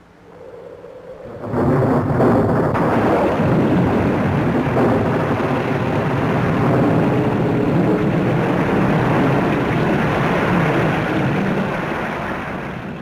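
A sudden heavy downpour: a loud, steady rush of rain that breaks out abruptly about a second and a half in and keeps up.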